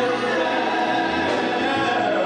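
Gospel singing: a male lead with a small group of backing singers, men and women, singing together in long held notes.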